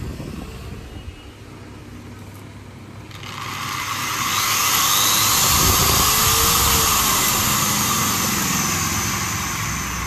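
Electric angle grinder with a cutting disc, run through a potentiometer speed controller: fairly quiet at first, then about three seconds in its whine rises in pitch and loudness as the controller knob is turned up, and it runs on at high speed, easing slightly near the end.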